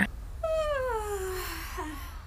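A girl's long, sleepy sigh on waking, one drawn-out tone sliding steadily down in pitch for about a second.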